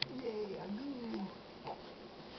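A young baby cooing: one drawn-out coo that rises and falls in pitch, lasting a little over a second.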